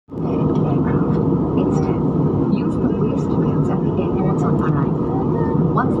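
Steady cabin noise of a jet airliner in flight: an even, deep rush of engine and airflow noise.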